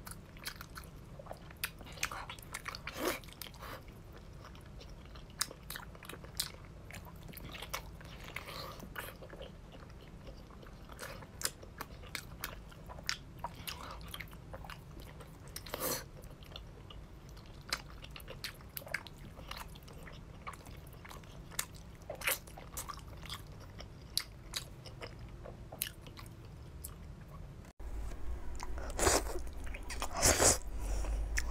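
Close-miked mouth sounds of eating braised pork by hand: biting, chewing and wet smacking, as a run of irregular sharp clicks over a faint steady hum. The eating grows louder for the last couple of seconds.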